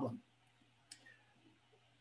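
Near silence with a faint low hum, broken by a single short click about a second in: a computer mouse click advancing a presentation slide.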